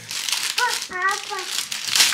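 Cellophane gift wrap crinkling as it is handled and pulled open. Partway through, a toddler's high voice babbles over it.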